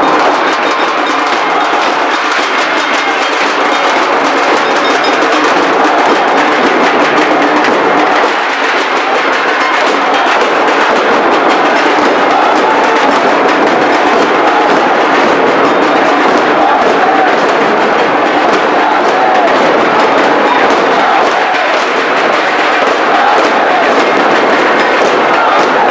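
Loud, continuous drumming and percussion, a dense unbroken rhythm of many strokes.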